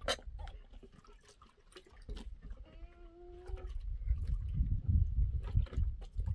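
A goat bleats once, a steady call about a second long, around three seconds in. Light clicks of metal tongs on charcoal come at the start, and a low rumble of wind on the microphone builds in the second half.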